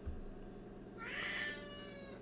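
A faint, high-pitched cry just under a second long, starting about a second in, gliding up in pitch and then easing down.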